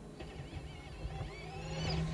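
Faint onboard audio from a damaged Cadillac Hypercar sitting stopped after hitting the barriers: thin, wavering high whines over a low rumble.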